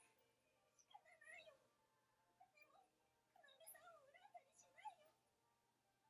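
A very faint, high-pitched girl's voice speaking with a wavering pitch, in a short stretch about a second in and a longer one from about three to five seconds in.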